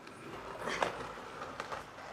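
Wooden spoon stirring beef and noodle stew in a clay cazuela, with a scrape and a short knock just under a second in.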